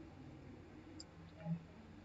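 Quiet room tone with a single faint click about a second in and a brief low sound at about one and a half seconds.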